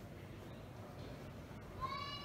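Low room tone, then near the end a single cat meow begins, lasting about a second, its pitch rising at the start and then falling slightly.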